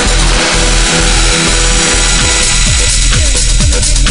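Live electronic house music from hardware synthesizers and effects pads: a pulsing kick drum under a dense wash of noise. The noise thins about three seconds in, giving way to quick drum hits that fall in pitch, several a second.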